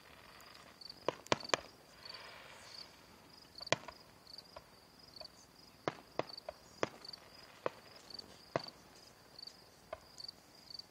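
Distant fireworks going off: about nine sharp bangs and pops at irregular intervals, three of them in quick succession a second in. Crickets chirp in a steady, high pulse underneath.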